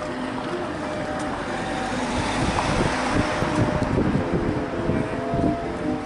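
A road vehicle passing close by on the street, its noise swelling about two seconds in and fading away near the end. Faint music with held notes plays underneath.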